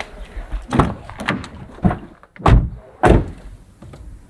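Car doors being shut: a few lighter knocks and clicks, then two heavy slams about half a second apart past the middle.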